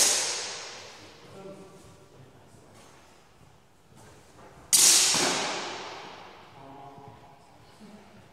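Two clashes of steel longsword blades about five seconds apart, each a sharp strike whose metallic ring dies away over about two seconds, echoing in a large hall.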